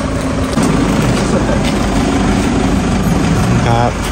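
A van's engine running close by, a steady low rumble, with a short voice near the end.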